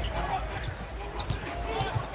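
Basketball game sound from the arena floor: a ball bouncing on the hardwood court a few times over steady crowd noise, with faint voices underneath.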